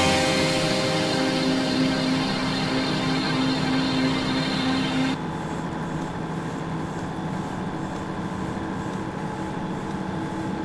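Machine-like drone closing an experimental song: a steady hum with several held tones over a hiss. About five seconds in, one held tone and much of the upper hiss cut off suddenly, leaving a quieter, duller drone.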